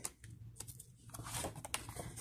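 Faint paper rustling and a few light taps as the pages of a paperback colouring book are turned and handled.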